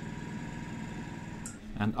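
Steady hum of a small electric motor running, which stops with a short click about one and a half seconds in.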